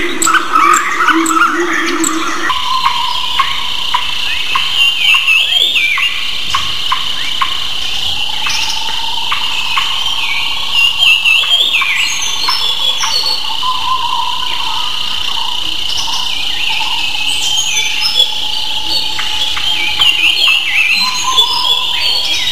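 Steady high-pitched insect chirring with scattered bird chirps over it, setting in about two seconds in and running on evenly.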